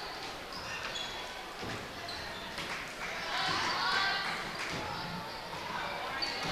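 Gym sound of a basketball game in play: a basketball being dribbled on the hardwood court, short high squeaks, and faint voices of players and crowd that rise a little around the middle.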